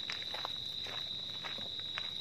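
Footsteps of several people walking on a paved lane, a scattering of irregular steps, over a steady high-pitched whine that carries on throughout.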